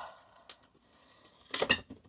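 The tail of a breathy sigh, then a faint tick and a short cluster of sharp clicks and light clatter near the end: plastic action figures and packaging being handled.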